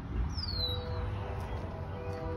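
Low rumbling background noise, with a high whistle falling in pitch about half a second in and faint steady music tones coming in soon after.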